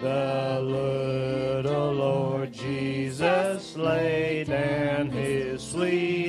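A group singing a slow worship song together with band accompaniment that includes an electric bass guitar, the notes held long and changing about once a second.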